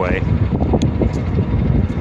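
Wind buffeting the microphone: a loud, gusting low rumble, with the end of a spoken word at the very start.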